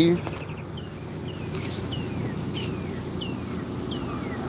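A bird calling: a series of short, falling whistled notes, about one every two-thirds of a second, over a steady low hum.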